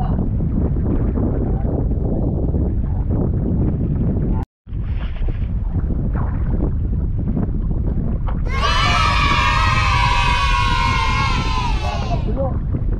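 Wind buffeting the microphone aboard a small outrigger boat on open sea, a steady rumbling roar that cuts out for a moment near the middle. For the last three and a half seconds a loud, wavering whine with many overtones, slowly falling in pitch, rides over it.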